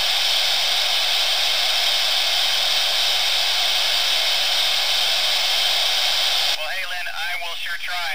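Steady hiss of an FM ham-radio receiver with no signal on the ISS downlink: the station's transmitter is unkeyed. About six and a half seconds in, the hiss suddenly drops as the ISS keys up, and a voice starts to come through.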